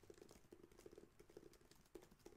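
Faint typing on a computer keyboard, a quick uneven run of key clicks.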